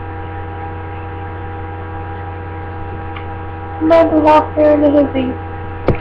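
Steady electrical mains hum in the webcam recording, a low buzz with many steady overtones. About four seconds in, a short voiced sound from the woman, a murmur of two or three syllables, rises briefly over the hum.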